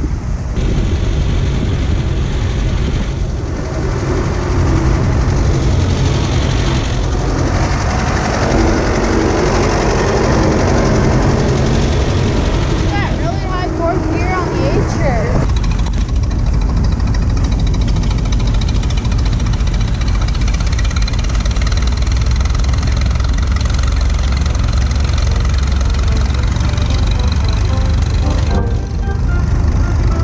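Mixed outdoor noise with voices in the background, then, about halfway through, the steady low hum of a Minneapolis-Moline tractor's engine running as it drives slowly past.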